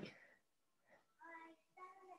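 Near silence, broken by a brief soft click at the start and two faint, short sung or hummed voice notes, one about a second in and one near the end.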